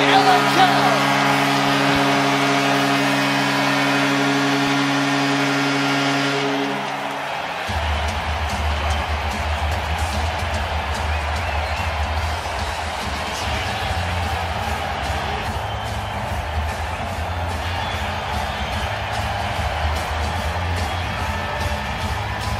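Arena goal horn sounding a steady held chord over a cheering crowd for about seven seconds, signalling a home-team goal. It cuts off and a goal song with a heavy pulsing bass takes over, with the crowd noise carrying on under it.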